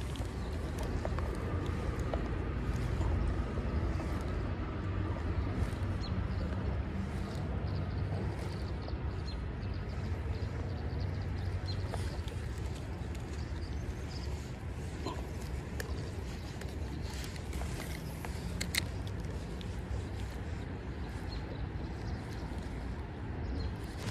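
Steady outdoor background noise, mostly a low rumble of wind on the microphone with a faint hiss of flowing creek water, broken by a few faint clicks.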